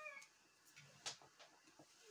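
Electric guitar note bending slightly down as it fades out just after the start, then near silence with a few faint clicks.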